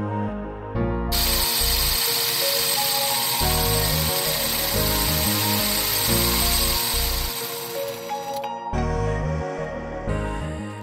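Background music over the high, steady whir of an RC car's brushed Traxxas electric motor and drivetrain running flat out on a stand, wheels spinning free. The whir starts about a second in and cuts off sharply near the end.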